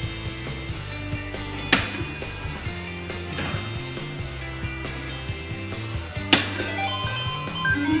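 Background music with two sharp clicks of soft-tip darts striking an electronic dartboard, the first nearly two seconds in and the second a little after six seconds; the second dart scores a single bullseye.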